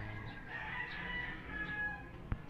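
Chickens in the background: a rooster crowing, with hens clucking.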